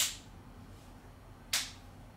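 Two short, sharp clicks, each with a brief hissing tail, about a second and a half apart, over a faint low hum.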